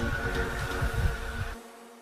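Low rumbling, buzzing noise of wind and stream water on a helmet-mounted action camera's microphone, which cuts off sharply about one and a half seconds in, leaving only a faint steady hum of background music.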